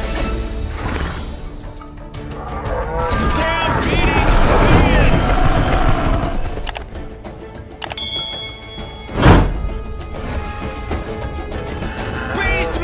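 Online video slot game sound: music and sound effects as a free-spins bonus is triggered, with animal-like calls early on and a short chime followed by a loud boom about nine seconds in.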